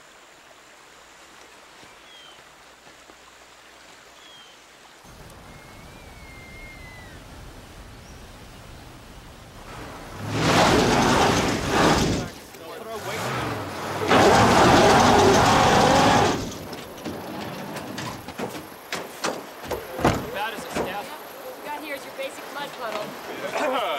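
A van's engine running with its wheel spinning in mud, the vehicle stuck. There are two loud stretches of wheelspin and flying mud, a couple of seconds each, about ten and fourteen seconds in, over a low engine rumble that starts about five seconds in.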